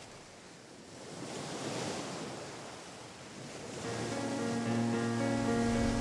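Sea waves washing in and drawing back twice, then background music enters about four seconds in as a sustained chord.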